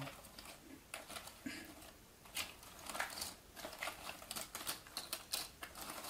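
Glossy cardboard jigsaw puzzle pieces clicking and rustling as a hand stirs them around in their cardboard box, in quick irregular clicks.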